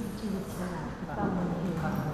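Indistinct, quiet talk from a few voices, no words clearly made out.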